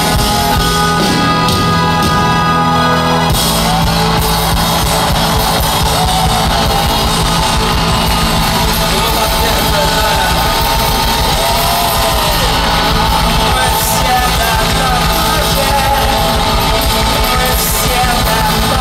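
A live rock band playing and singing in a large hall: a male singer over acoustic guitar and a drum kit. About three seconds in, the drums and bass come in fuller.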